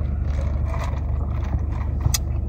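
Steady low hum of a car idling, heard inside the cabin, with a faint sip from a cup of iced coffee.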